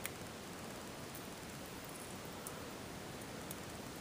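Faint steady hiss with a small click near the start and a couple of faint ticks later, from fingers handling a small locket and picking an adhesive picture out of it.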